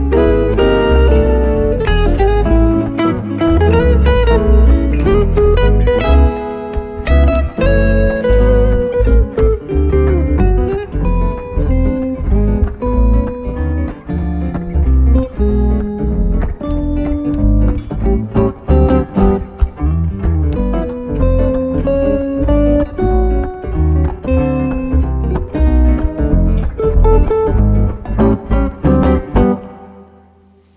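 Live jazz guitar music: a hollow-body archtop guitar and a solid-body electric guitar playing together, the piece closing near the end.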